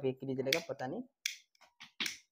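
A man speaking briefly, then a small plastic lighter struck four times in quick short clicks until the flame lights.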